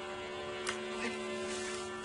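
A steady hum of several held tones, with a brief faint click about two-thirds of a second in.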